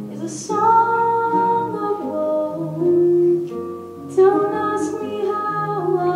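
Live jazz duo: a woman singing long, held melody notes into a microphone, accompanied by chords on an archtop electric guitar.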